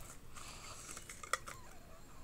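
Faint rustling of packaging being handled in an opened plastic toy capsule, with one light click about a second and a half in.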